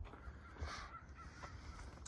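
A faint, distant bird call about half a second in, over a quiet outdoor background.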